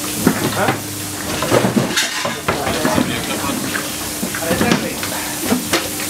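Mechanics working on a rally car: repeated clinks, knocks and clatter of metal tools and a wheel being handled, over a steady hum.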